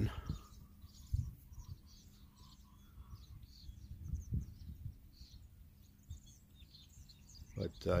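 Small birds chirping, many short faint calls, over a steady low rumble, with a soft knock about a second in and another a little past four seconds.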